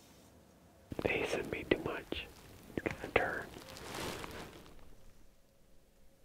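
A man whispering a few short phrases, starting about a second in and trailing off by about four and a half seconds.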